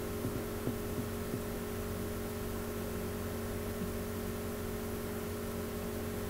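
A steady electrical hum with two fixed tones, with a few faint soft knocks in the first second and a half.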